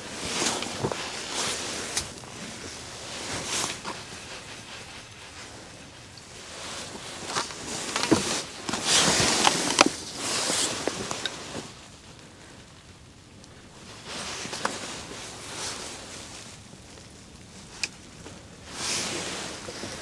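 Rustling and scuffing of a person moving in heavy winter clothing and handling gear, in irregular bursts, loudest about halfway through as he bends forward to the ice.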